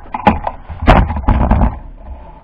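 Handling noise from a camera being picked up and repositioned: a few sharp clicks, then a run of heavy low knocks and rubbing, loudest about a second in.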